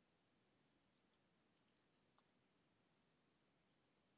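Near silence: faint room tone with a few small, scattered clicks, the clearest just after two seconds in.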